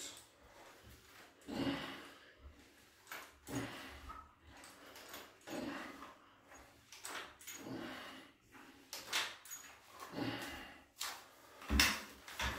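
A man breathing hard in rhythm with repeated seated rows on a resistance-band bar, a short breath every one and a half to two seconds. A sharp knock comes near the end as the bar and bands are handled.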